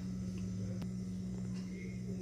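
A steady low hum, with a single faint click just under a second in.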